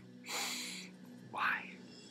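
A man's short, breathy laugh in two parts: a puff of breath about a quarter second in, then a brief voiced chuckle about a second later.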